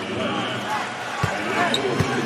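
Basketball arena crowd noise, steady throughout, with one low thud of a basketball bouncing on the hardwood court a little past a second in.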